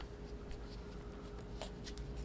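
Faint handling noise of a paint tube being picked up and readied, with a few light clicks near the end.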